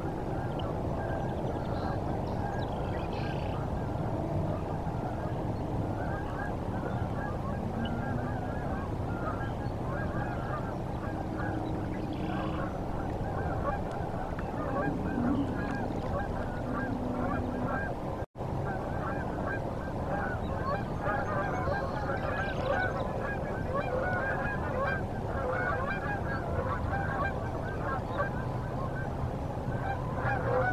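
A large flock of waterfowl honking and calling continuously, many overlapping calls at once. The audio cuts out for a split second about two-thirds of the way through.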